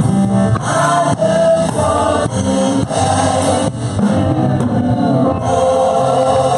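Gospel praise-and-worship singing by a small group of women's voices, backed by a drum kit and keyboard.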